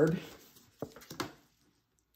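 A few brief, light clicks and taps of tarot cards being handled and drawn from a deck, about a second in, then near silence.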